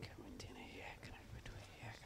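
Faint, indistinct human speech.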